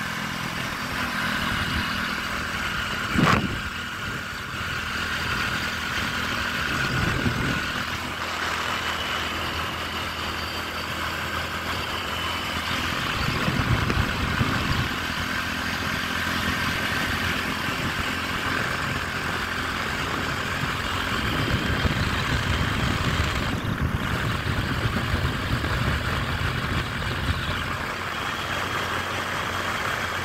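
Motorcycle engine running steadily at cruising speed, with wind rumbling on the microphone in gusts. A single sharp knock about three seconds in.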